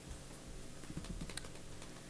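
Faint scattered clicks and taps over a low room hum, coming more often in the second half.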